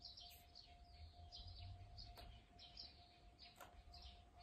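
Near silence, with faint bird chirps repeating in the background as short, falling high notes.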